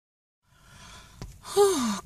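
A woman's audible breath in, then a single voiced sigh near the end that falls in pitch, with a faint click just before it.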